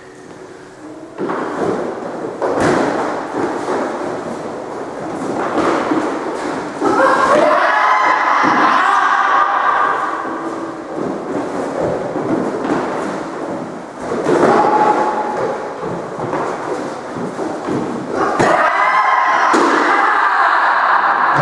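Footwork thuds and stamps of two sparring karateka on a wooden court floor, with gloved strikes, echoing off the hard walls. A couple of longer, higher-pitched sounds rise over the knocks about seven seconds in and again near the end.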